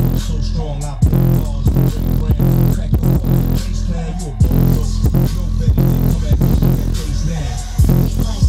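Bass-heavy music with a pounding beat and sliding low bass notes, played loud through a brand-new MB Quart 12-inch subwoofer on an 80-watt amp. The owner says the driver is not yet broken in, so the lowest notes are weak.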